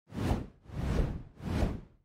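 Whoosh sound effects of an animated intro, three in quick succession, each swelling and fading over about half a second, with a fourth starting at the end.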